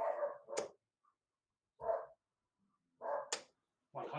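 A dog barking three times in short single barks, with two sharp clicks as darts strike the dartboard.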